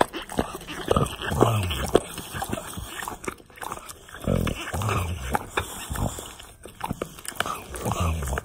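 English bulldog growling low in a few short bursts while tugging on a ball, with its jaws working and clicking on the toy between growls.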